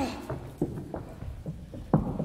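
Footsteps on a stage floor: several short, uneven steps about half a second apart, with a sharper knock near the end.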